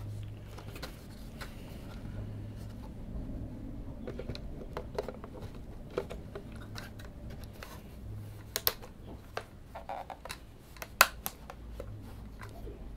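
Small irregular clicks and taps of hands handling a quartz clock movement and fitting a battery into it, with a few sharper clicks in the second half, over a low steady hum.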